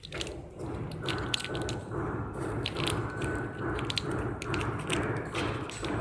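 240A automatic sugar stick-pack machine running through its fill, seal and cut cycle: a regular mechanical pulse about twice a second, with scattered sharp clicks.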